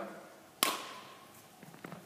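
A badminton racket strikes a shuttlecock once, about half a second in: a single sharp crack with a short ringing ping that fades. Faint light taps follow near the end.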